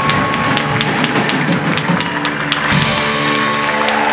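Live band playing: drum kit hits over guitars and accordion, then the band holds a sustained chord from about three seconds in, as at the close of a song.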